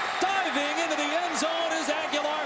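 A man's voice, a TV broadcast commentator's, over stadium crowd noise.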